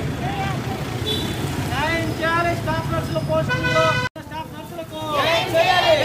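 A group of protesters chanting slogans in unison, in loud repeated shouts. A brief steady held tone sounds about three and a half seconds in, and the sound cuts out for an instant just after.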